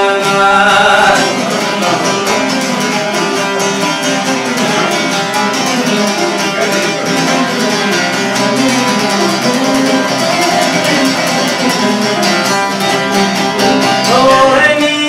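Folk ensemble of long-necked Albanian lutes, çifteli among them, with a round-backed lute, playing a fast plucked instrumental passage. A male voice trails off about a second in, and the rest is instruments only.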